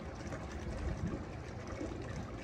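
Faint steady water noise of an outdoor pool, with a low rumble underneath and no distinct splashes.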